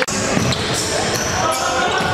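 Basketball bouncing on a hardwood gym floor during a game, with short high squeaks from sneakers on the court, in an echoing hall.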